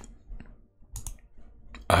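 A few faint, separate clicks, about three spread over two seconds.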